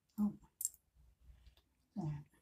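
Hair sticks and a hair accessory handled close to the microphone. There is a sharp click about half a second in and light scattered clicks after. Brief murmurs from a person come just before the click and again at the end.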